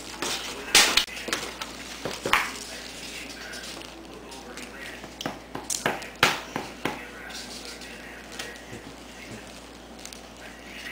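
Irregular sharp knocks and rustles of things handled on a wooden table: paper, a plastic bag and a marker. They come thickest in the first seven seconds and thin out toward the end.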